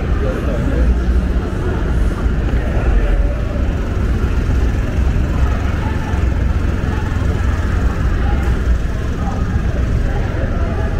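City street ambience: a steady low rumble of traffic, with people talking in the background.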